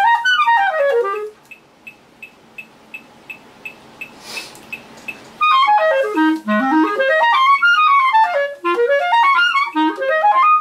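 Clarinet playing fast rising and falling triplet arpeggio runs, breaking off about a second in. In the pause of about four seconds a faint steady tick comes about three times a second and a breath is drawn. Then the runs resume, sweeping down into the low register and back up.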